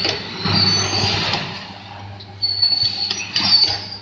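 Triangle sachet packing machine running: a steady low hum with a thin high whine, and its pneumatic jaw units working through a sealing and cutting stroke twice, about two seconds apart, with clicks and noise.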